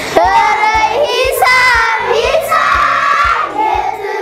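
A class of children singing a song together in unison, several young voices holding steady notes that change from line to line.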